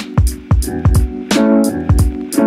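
Background music with a steady beat: deep kick-drum thumps and sharp hits under sustained chords.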